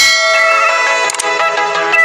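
Electronic intro music with a notification bell ringing over it, a sound effect from a subscribe-button animation as its bell icon is clicked.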